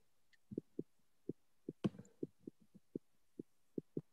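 Faint, choppy fragments of a voice over a video call, heard as short low pulses about three or four a second, with one sharp click about two seconds in.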